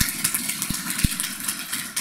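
A small audience applauding: a dense, steady patter of many hand claps, with a couple of short low thumps about a second in.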